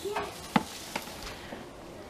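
Two light, sharp knocks from plastic toy pieces being handled in a toddler's water play table, over a faint background, with a brief voice sound at the very start.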